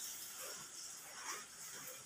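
Steady rain falling, heard as a faint, even hiss.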